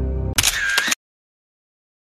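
Background music cut off by a camera-shutter sound effect: one brief, loud, sharp burst lasting about half a second, after which the sound drops out completely.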